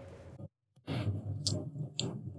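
The tail of a single snare drum stroke, snare wires on, ringing out and fading over the first half-second. The drum has just been quick-tuned with four quarter turns on the top head and five on the bottom. After a moment of dead silence there is only faint room noise with a couple of small clicks.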